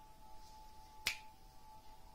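A single sharp click about a second in, from the cardboard document sleeve and card of an iPhone box being handled, over a faint steady hum.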